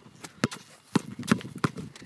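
A basketball being dribbled on asphalt: about four sharp bounces, roughly two a second.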